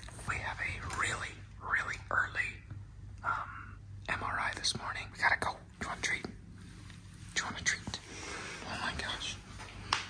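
Hushed whispered voices in short breathy phrases, over a faint steady low hum.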